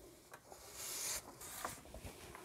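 Hands picking up and clearing away small toys: faint rustling, with a brief louder rustle about a second in and a couple of light clicks.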